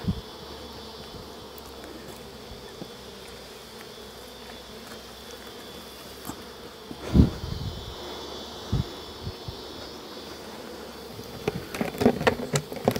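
Honey bees humming steadily around a hive box they are being moved into, many still clustered at its entrance. A thump about seven seconds in and a lighter knock shortly after.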